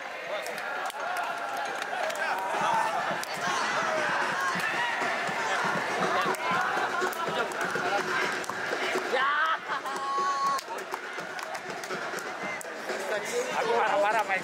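Several people talking at once in overlapping, indistinct chatter, with a short held tone about ten seconds in.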